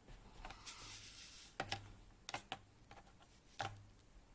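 Faint small clicks and taps, about five scattered through the few seconds, with a soft rustle about a second in: hands handling a diamond painting canvas and its tools.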